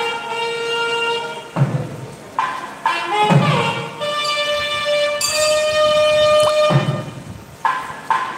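Live temple ritual music: a loud wind instrument plays long held notes, with three low drum strokes along the way.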